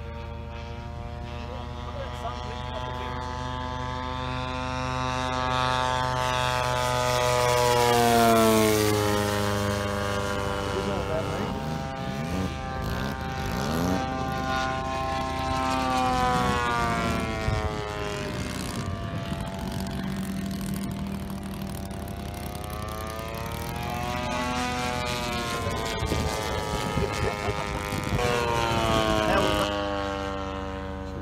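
Engine and propeller of a radio-controlled model warbird running in flight and making repeated passes. The note swells and drops in pitch as it goes by about eight seconds in, then rises and falls again on further passes near the middle and near the end.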